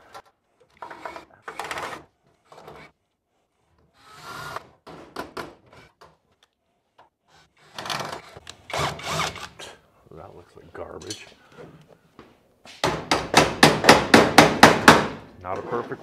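Metalwork on a steel running board: scattered short knocks and tool handling, then near the end a fast, loud run of about a dozen sharp strikes, some six a second.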